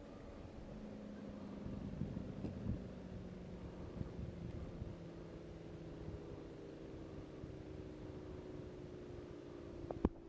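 Faint steady engine drone, like a distant motorboat, its pitch sinking slowly. Short knocks and rustles of the fish and rod being handled about two to four seconds in.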